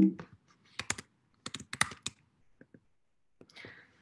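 Computer keyboard keys being pressed: sharp clicks in a short cluster about a second in and another around two seconds in, then a few faint taps. A brief voiced sound comes right at the start, and a soft breath comes just before speech resumes.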